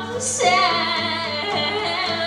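Live acoustic rock song: a woman singing lead over two acoustic guitars.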